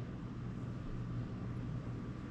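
Quiet room tone with a steady low hum; no distinct event.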